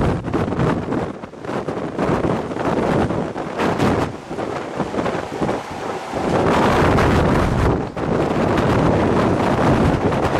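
Strong wind from a tornado close ahead buffeting the microphone, rising and falling in gusts and loudest through the second half.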